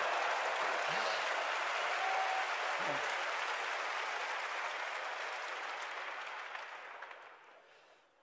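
Large audience applauding and laughing in response to a joke, the applause dying away over the last two seconds.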